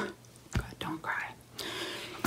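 Soft mouth and breath sounds from a woman between phrases: a short lip click about half a second in, a faint half-voiced murmur, then a breath in near the end.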